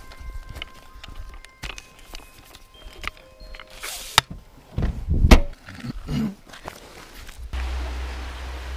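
Footsteps on the forest floor and knocks from the handheld camera while walking, with a heavier thump about five seconds in, over faint sustained notes of background music. Near the end a low wind rumble sets in on the microphone.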